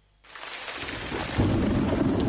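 Storm sound effect: after a brief silence, rain hiss swells in, and a loud rolling rumble of thunder breaks in about one and a half seconds in.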